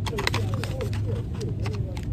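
Plastic blister packs of dental floss clicking and rattling against metal pegboard hooks as they are handled, a quick run of sharp irregular ticks. A steady low hum and faint voices lie underneath.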